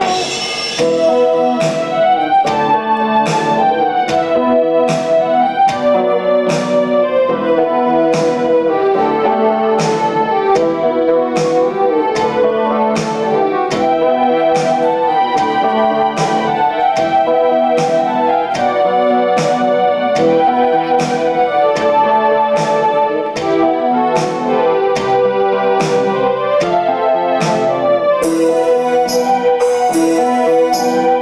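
Live instrumental music: a Chapman Stick and an electric keyboard playing a melody together over a steady beat of sharp percussive hits, about two a second.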